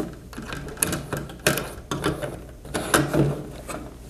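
Plastic ceiling-inlet blade section and its rods being handled on a tabletop: a scatter of light clicks and knocks, the sharpest about one and a half and three seconds in.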